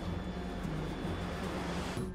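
A whooshing rush of noise that swells and builds toward the end, over a low, steady soundtrack drone.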